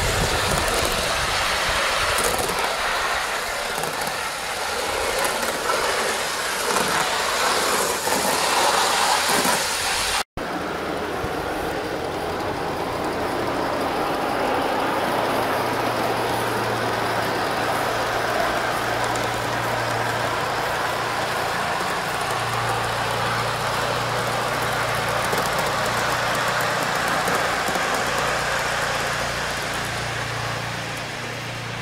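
Live steam garden-railway locomotive running, with a steady hiss of steam and exhaust. A low steady hum joins about halfway through.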